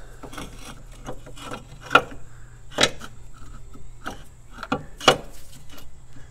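Motor mount being worked into place by hand against its steel bracket: irregular metal clicks and scraping, with three sharper knocks spread through. It is a tight fit that still needs the engine raised further.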